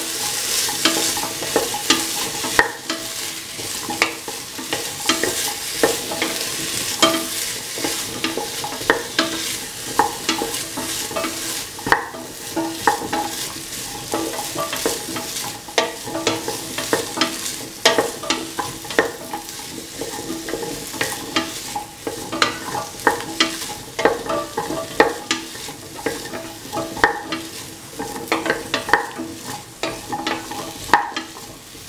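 Chopped potato, carrot and onion pieces sizzling as they are sautéed in a metal pan. A utensil stirs them steadily, scraping and clicking against the pan a few times a second over the hiss of the frying.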